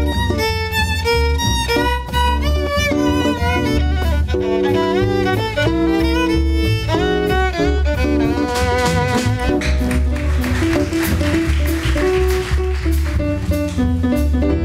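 A live jazz band playing an instrumental passage: violins carry the melody over a pulsing double bass, with an electric guitar in the band. About eight seconds in, the sound grows busier and brighter.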